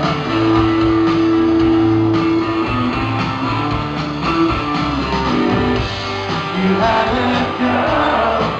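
Rock band playing live, with electric guitars over bass guitar and drums, and some long held notes. It is recorded from the audience, so it sounds like a concert in a club room.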